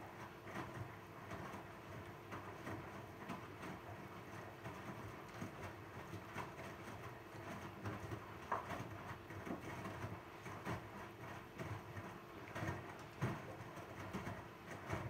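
Zanussi ZWF844B3PW front-loading washing machine tumbling a wet load of towels: water sloshing and soft, irregular thumps as the load drops in the turning drum, over a faint steady hum.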